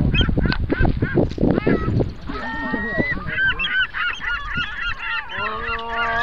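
Several young voices shrieking and hooting wordlessly, with quick knocks and bumps in the first couple of seconds and a long held cry starting near the end.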